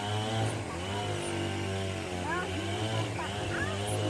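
A steady low drone like a running motor, with a person's voice rising and falling over it.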